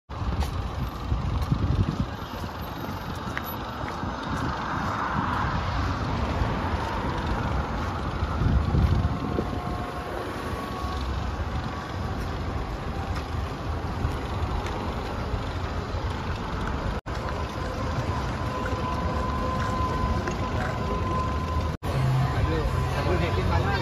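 Wind buffeting a phone microphone in low rumbling gusts over steady outdoor background noise, with a faint thin whine in the second half. The sound drops out briefly twice.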